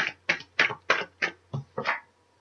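A deck of tarot cards being shuffled overhand, an even rhythm of about three and a half short strokes a second, stopping at the end.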